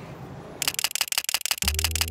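A fast, even run of sharp mechanical clicks, about fourteen a second, starting about half a second in and lasting about a second and a half. Low steady music comes in under it near the end.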